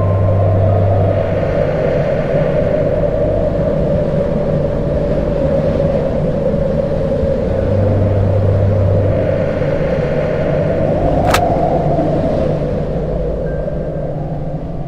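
Horror-film sound design: a loud, steady rumbling drone with deep low swells near the start and again about eight seconds in. A single sharp click comes about eleven seconds in.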